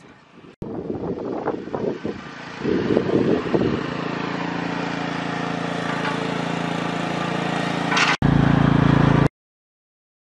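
A few seconds of rustling and bumps, then a small engine running steadily. It is louder after about eight seconds and cuts off suddenly a little after nine seconds.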